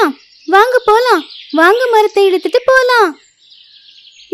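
High-pitched cartoon voices making wordless straining sounds in short rising-and-falling bursts: effort noises from birds hauling on a rope.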